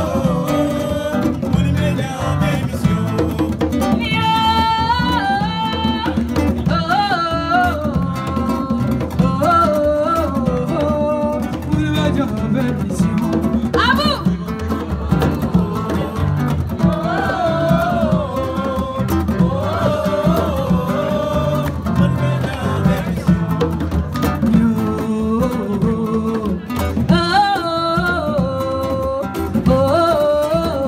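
Live band music: a woman singing a melody over acoustic guitar and a drum kit.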